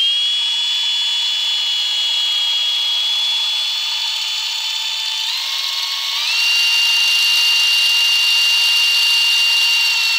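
Power drill spinning a Puch TF/SG engine's crankshaft through a socket to drive its oil pump, with a steady motor whine. The whine steps up in pitch twice, about five and six seconds in, and is louder after the second step.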